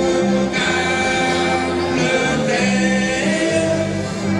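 Live dance band playing: accordion chords held over electric and acoustic guitars and drums, the chords changing every half second to a second.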